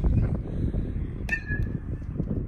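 Wind buffeting the microphone, a steady low rumble. About a second and a half in, a sharp click is followed by a short high tone.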